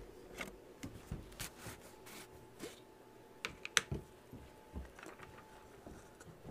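Faint, scattered clicks and light knocks of a plastic underglaze bottle and its cap being picked up and handled, with a couple of sharper clicks a little past the middle.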